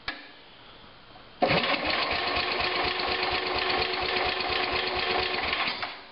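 Cold Tecumseh engine of a 1970 Sears Suburban 12 garden tractor cranked on its electric starter with the choke on. The cranking starts about a second and a half in, with an even run of compression pulses for about four seconds, and stops just before the end without the engine catching. The owner puts this down to the engine sometimes not liking to start with choke.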